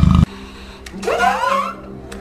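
An animated film's soundtrack: a loud burst of noise that cuts off suddenly just after the start, then a brief voice-like sound about a second in, its pitch rising and wavering, over a faint low hum.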